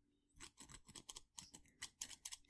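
Scissors snipping, a quick run of faint, short, sharp snips starting about a third of a second in.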